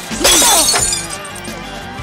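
A glass bottle smashed over a man's head, shattering suddenly about a quarter second in. Action-film score music plays underneath.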